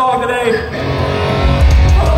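Loud live electric guitar chord ringing out through a festival PA, with heavy low bass coming in about halfway through; a man's voice is heard at the start.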